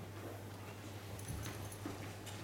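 Steady low electrical hum, with a few faint footsteps and small knocks in the second half as people move about on a carpeted floor.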